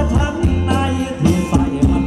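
Live band playing Thai ramwong dance music with a singer, over a strong bass line and a steady beat.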